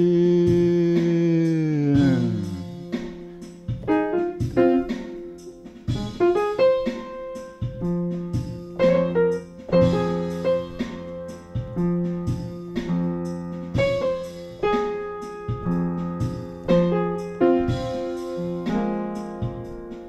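Upright piano playing an instrumental blues passage of rhythmic chords and right-hand figures. At the start a long held note slides down in pitch and dies away about two seconds in.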